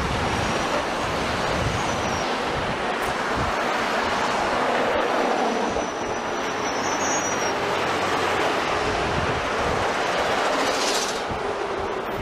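Steady noise of a train running on rails, with faint high-pitched wheel squeals about half a second in and again in the middle.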